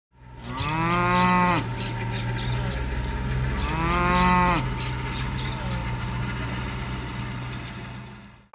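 A cow mooing twice, each call about a second long, over a steady background with faint high chirps; the sound fades out near the end.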